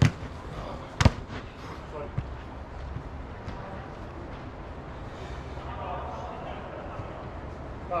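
Footballers' distant shouts and calls echoing under an inflatable sports dome, over a steady rumble. Two sharp, loud knocks about a second apart near the start, and a fainter one about two seconds in.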